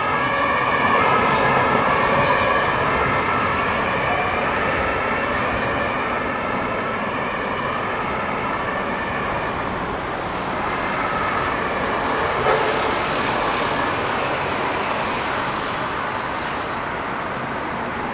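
HLF 20 rescue fire engine sounding its siren and horn continuously as it drives away, the horn tones clear at first and fading into the distance over street traffic noise.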